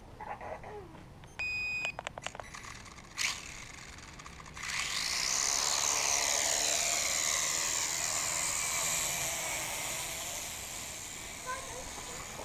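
Small quadcopter drone: a short electronic beep, then about four and a half seconds in its rotors spin up into a steady high whir that wavers in pitch as it climbs.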